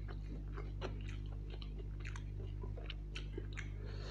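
Close-miked chewing of chicken liver curry and rice, with wet mouth clicks and smacks several times a second, and fingers working the rice into the curry on the plate. A steady low hum runs underneath.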